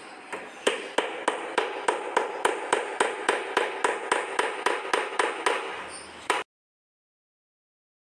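Small hammer tapping nails into a wooden nesting box: a steady run of quick strikes, about three or four a second, each with a short hollow ring from the box. The strikes stop abruptly a little after six seconds in.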